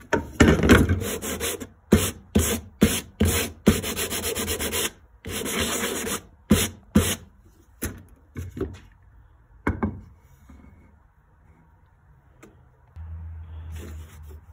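Hand-sanding a cut pine block with sandpaper: about a dozen rough back-and-forth scraping strokes, then a few light knocks of wood on the bench. The strokes stop about seven seconds in. The sanding flattens the foot's underside so that it sits flush and stable under the board.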